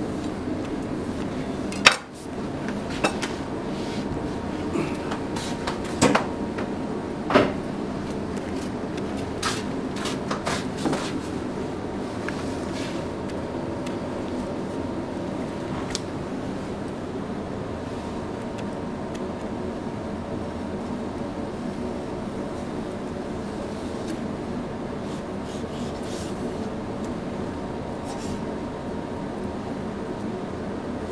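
Steady room hum with scattered knocks and taps of tuna and a knife being set down and handled on a wooden sushi counter. The loudest knock is about two seconds in, with a few more over the next several seconds and one more later on.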